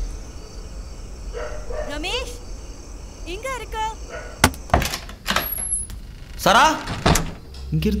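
Several sharp knocks on a wooden door in the second half, mixed with brief voices.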